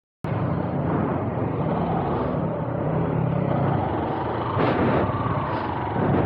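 Yamaha YTX 125's single-cylinder four-stroke engine running as the motorcycle rides at low speed, with road and wind noise. About four and a half seconds in, a brief louder surge with a rising pitch.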